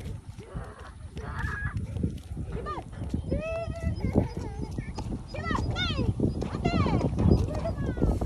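High-pitched wordless voice calls, a run of rising-and-falling cries from about three seconds in, over a steady low rumble.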